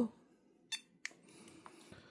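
Two faint clicks, about a third of a second apart, from the buttons of a handheld ToolkitRC M7 battery charger being pressed to move through its setup menu.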